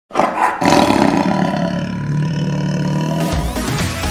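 Outro sting: a sudden loud roar-like sound effect over music. About three seconds in, an electronic music track with a steady beat takes over.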